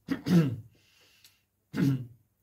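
A man clearing his throat: one short burst just after the start and another near the end, with a quiet gap between.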